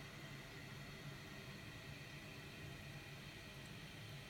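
Toilet tank fill valve running as the tank refills, heard as a faint, steady hiss of water.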